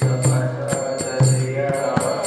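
A man's voice chanting a devotional song, with small hand cymbals and a drum keeping a steady beat of about two strokes a second.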